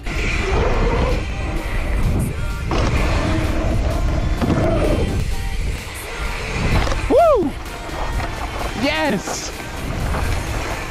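Mountain bike ride recorded on a bike-mounted action camera: wind and rolling tyre rumble on the microphone, with two rising-and-falling whoops from a voice about seven and nine seconds in.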